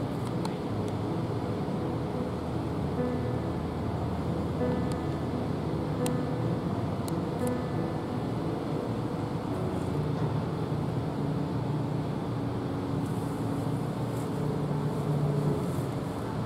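Steady low outdoor background hum of a port area, with faint tones that come and go over it.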